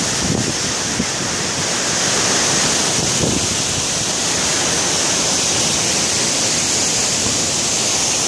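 Large waterfall with a 120-metre drop, heard close up in its spray: a steady, loud rush of falling water.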